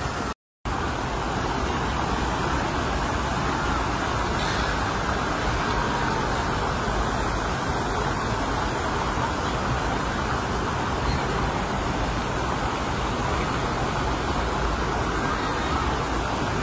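Steady road-traffic noise, an even continuous rumble and hiss with no distinct events, cut by a brief dropout to silence about half a second in.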